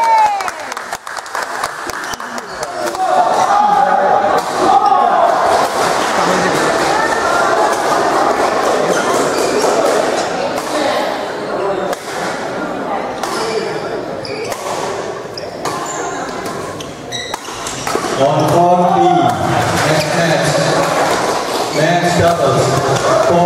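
Badminton hall ambience: many people talking, with scattered sharp hits of rackets on shuttlecocks from several courts, all echoing in the large hall. A nearer voice comes in about four seconds before the end.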